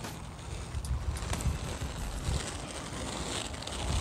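Quad roller-skate wheels rolling over asphalt, a steady rumble, with wind buffeting the microphone.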